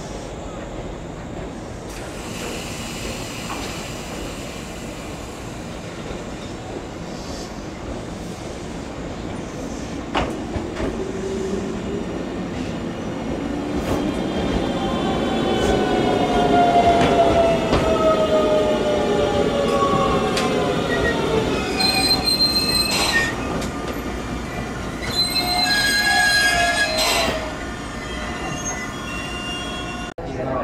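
Tobu 100 series Spacia electric express train pulling into a station and braking. The rumble builds, a whine falls steadily in pitch as it slows, and high steady squeals sound twice near the end.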